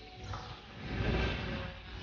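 Whoosh sound effect over a low rumble, swelling to a peak about a second in and easing off near the end, part of a TV channel's animated intro.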